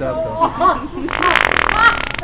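Wet fart sound from the original Sharter fart-noise device: a rapid buzzing sputter lasting a little under a second, starting about a second in.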